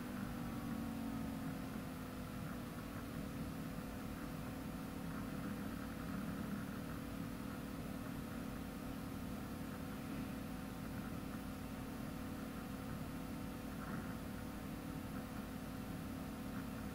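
Steady low hum with a faint hiss: background room tone.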